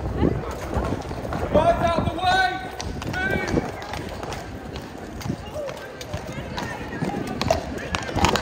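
A Household Cavalry horse's shod hooves clip-clopping at a walk on paving stones, mixed with crowd chatter and a raised voice about two seconds in.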